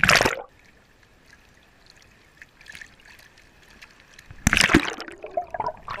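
Water splashing as a camera plunges under the surface, then about four seconds of muffled, quiet underwater sound, then another loud splash as it breaks back through the surface about four and a half seconds in.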